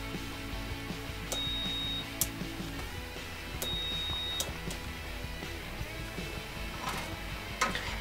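A multimeter's continuity buzzer beeping twice, a steady high tone of just under a second each time, as a newly soldered tactile push-button is pressed and closes the circuit. The beep shows that the replacement button makes contact. Sharp little clicks of the button being pressed and released come between the beeps.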